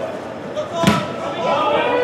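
A football kicked hard once, a single sharp thud a little under a second in, amid players' voices and shouts on the pitch.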